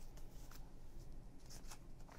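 Faint rustles and light taps of paper envelopes and a form being handled and slid across a wooden tabletop.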